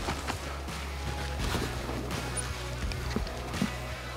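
Background music with steady low sustained tones.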